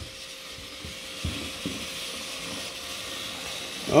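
Battery-powered toy trains running on plastic track, a steady faint whirr of their small motors with a thin steady whine. Two soft thumps come a little over a second in.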